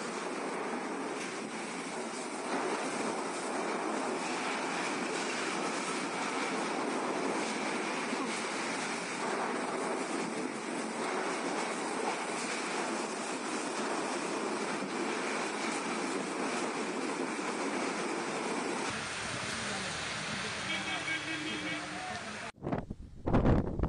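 Cyclone-force wind with driving rain: a steady rushing noise with no let-up. About four-fifths of the way through, the sound becomes deeper and fuller.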